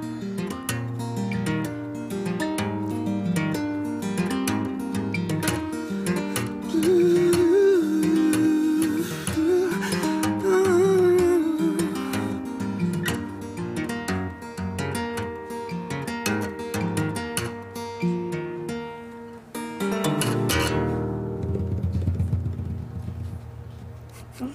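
Solo acoustic guitar played in a two-handed tapping style: notes are hammered onto the fretboard while the guitar's body is struck like a drum between them. Near the end the percussive hits stop and a low chord rings out and fades.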